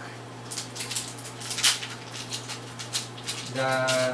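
Foil Pokémon booster-pack wrapper crinkling and crackling in the hands as it is opened, in an irregular run of sharp crackles. A low steady hum sits underneath.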